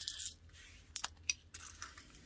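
Loose coins clinking as they are gathered up and dropped into a glass jar: a quick cluster of clinks at the start, then single clinks about a second in and just after.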